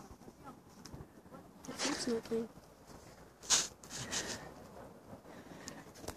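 Faint voices of people talking, a few short syllables about two seconds in, with a brief sharp hiss about three and a half seconds in.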